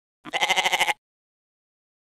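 A single goat bleat, quavering and lasting under a second.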